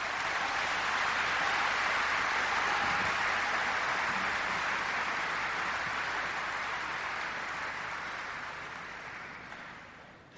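Large audience applauding in a hall, building up over the first second or two and then slowly dying away toward the end.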